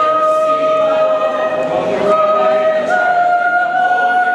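Small mixed choir of men's and women's voices singing together in long held notes, with a short break in the middle and a step up in pitch about three seconds in.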